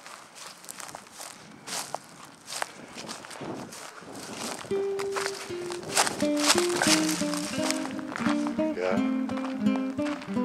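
Footsteps on a gravel trail. About halfway through, music with plucked guitar notes comes in and becomes the loudest sound.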